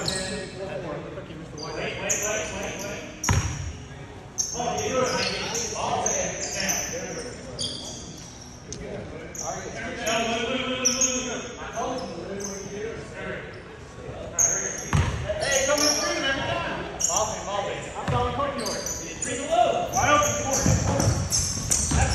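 Basketball bouncing on a hardwood gym floor, the thumps echoing in a large hall, with indistinct players' voices throughout; the loudest thumps come about three seconds in, again around fifteen seconds, and near the end.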